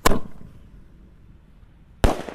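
Small roman candle firing a shot: one sharp launch pop right at the start, fading over about half a second.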